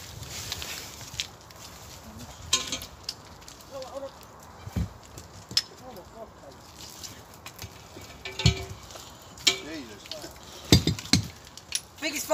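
Faint, indistinct talk from people nearby, with scattered clicks and knocks and a few heavier thumps, the last two close together near the end.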